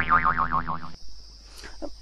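A cartoon 'boing' sound effect, a springy tone with a rapid wobbling pitch, lasting about a second and stopping abruptly.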